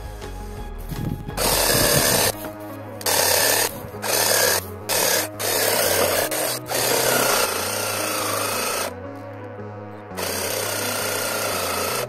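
Small battery-powered reciprocating saw cutting through branches, running in short bursts that stop and start several times, then two longer, steadier runs with a faint whine. The uploader puts the saw stopping on thicker branches down to a weak battery.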